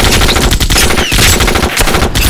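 Sustained automatic gunfire: a dense, unbroken string of rapid rifle shots, loud throughout.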